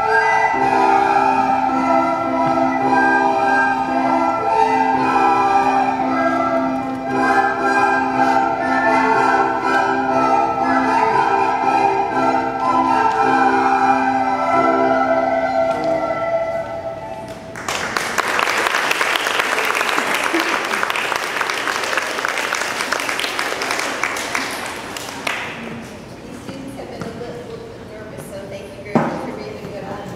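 A class of children playing a tune in unison on descant recorders, accompanied by an electronic keyboard, the music ending about 17 seconds in. Applause follows for about eight seconds, then a single thump near the end.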